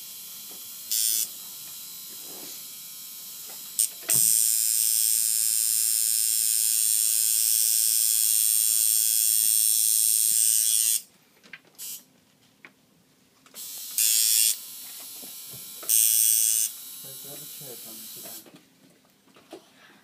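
Tattoo machine buzzing as the needle works into skin, running in bursts: a short one about a second in, a long one of about seven seconds from around four seconds, then two short bursts later on.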